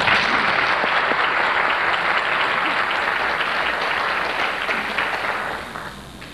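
Audience applauding, the clapping dying away near the end.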